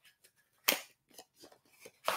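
Faint handling noises: a brief rustle about two-thirds of a second in, then a few small clicks.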